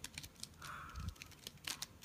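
A plastic mirror cube's layers being turned by hand: a quick, irregular scatter of light clicks and clacks as the pieces snap past each other.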